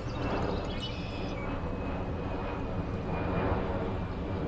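Airplane flying overhead: a steady low rumble.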